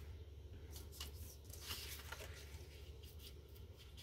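Faint paper handling: a few soft rustles and taps as planner pages and a sticker book are moved by hand, over a low steady hum.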